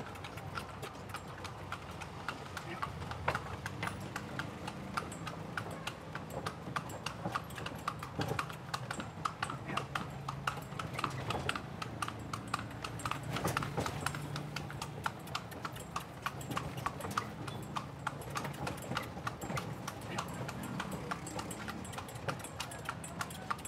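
A horse's hooves clip-clopping steadily on a paved street as it pulls a cart, with a steady low hum underneath.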